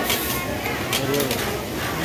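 Industrial sewing machine running steadily as elastic is top-stitched onto fabric, with a few sharp clicks, under voices talking in the background.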